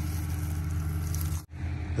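An engine idling steadily with a low, even hum. The sound drops out abruptly for an instant about one and a half seconds in, then the same hum resumes.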